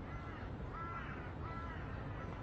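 A crow cawing three times, short evenly spaced calls, over a low steady outdoor background rumble.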